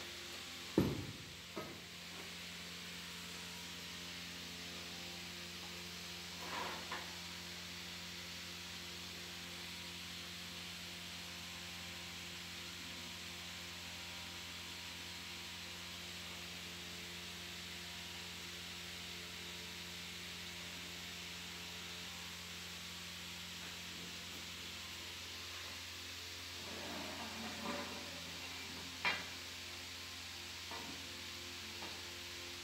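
Steady hum and hiss with a few scattered metal knocks and clinks from hands working on a manual paper cutting machine being assembled. A sharp knock comes about a second in, a lighter one around six seconds, and a short run of clinks and knocks near the end.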